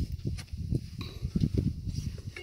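Irregular knocks and scuffs of a hiker's shoes on a steel rung ladder while climbing, over a low, uneven rumble.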